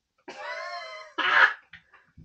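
A man's long, drawn-out vocal groan, followed about a second in by one loud cough.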